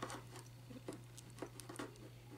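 Faint small clicks and scrapes of fingers pressing a plastic swap-out hand onto an action figure's wrist peg, about five light clicks over a steady low hum.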